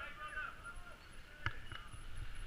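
Faint, distant voices of a group of people talking, over low riding rumble, with a single sharp knock about one and a half seconds in.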